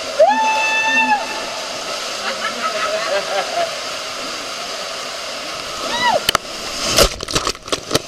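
Water rushing steadily through an enclosed uphill water slide tube, with a rider's long whoop at the start and a short yell about six seconds in. Near the end there is loud, choppy splashing as the rider comes out into the pool.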